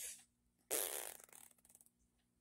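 A woman breathing in, then blowing out a long breath through pursed lips, starting a little under a second in and trailing off with a faint flutter.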